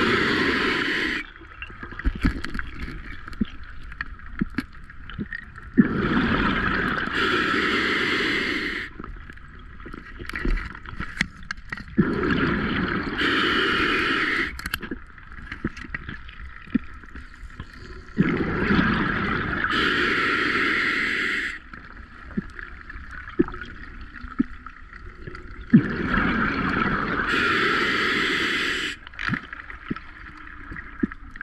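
Open-circuit scuba diver breathing at depth: each exhalation is a roughly three-second rush of bubbles from the regulator exhaust, about every six to seven seconds, with quieter inhalations and small clicks in between.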